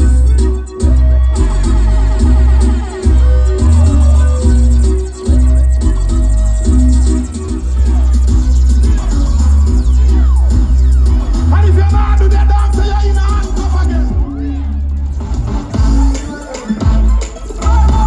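Loud live music through a stage PA, with a heavy pulsing bass line and a performer's vocals over the microphone.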